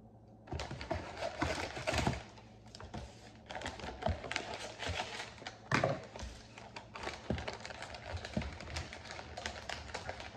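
Wrapping paper crinkling and rustling as it is folded around a parcel, with many small clicks and taps. It starts about half a second in, and the loudest crackle comes about six seconds in.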